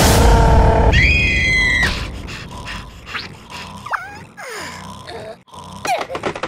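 Cartoon soundtrack: a loud dramatic music sting of held tones for about two seconds, then a drop to quieter scattered effects with short sliding squeaks.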